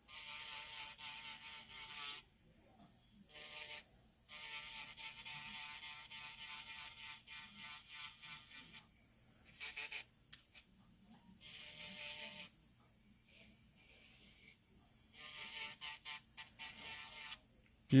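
Electric nail drill with a diamond cuticle-prep bit running in reverse, worked along the sidewall of a natural nail to clean it for a deep manicure prep. It comes in several faint passes of a few seconds each, stopping and starting, the longest about halfway through.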